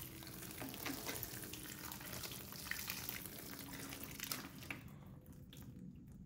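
Water sprinkling from a plastic watering can's rose onto potting soil in a large pot: a faint, steady hiss with fine crackle that stops near the end as the pour is halted.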